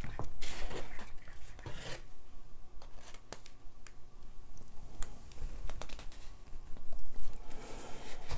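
Handling noise as a stretched canvas and a plastic cup of paint are flipped over together and set down on a tabletop: two scraping rustles in the first two seconds, then scattered light taps and clicks, and another scrape near the end.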